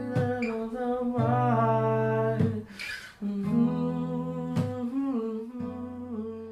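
Music: a voice humming long held notes that slide between pitches, over guitar and steady low notes, with a breath about three seconds in. The song tapers off near the end.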